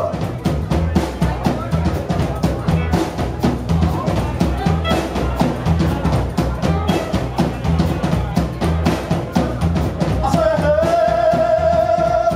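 Live rockabilly band playing a driving, steady rhythm on upright bass, drum kit and guitars. About ten seconds in, a singer comes in with one long held note.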